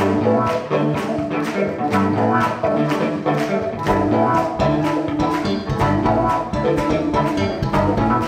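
Live band playing an instrumental jazz-style piece: drums keep a steady beat of about three strokes a second under electric bass and keyboards.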